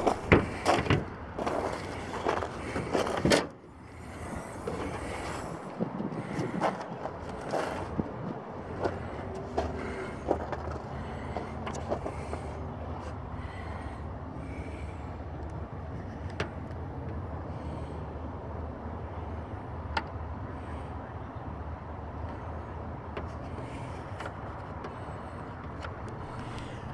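A car bonnet being opened: rustling and clicks, then one loud clunk about three and a half seconds in. After that comes a low steady hum with faint scattered clicks as the charger is handled.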